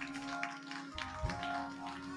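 Organ holding sustained chords, with a scatter of sharp taps over it and a low thump just over a second in.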